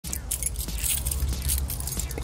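A bunch of keys jangling in a hand, in irregular bright chinks, over a steady low rumble.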